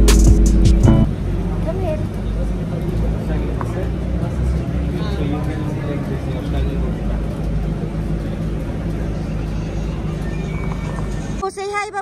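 Music ends about a second in, giving way to the steady low rumble of a shuttle bus's interior, with faint passenger voices. The rumble stops abruptly near the end.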